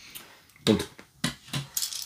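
A few light clicks and knocks of LEGO plastic bricks being handled and set down on a table.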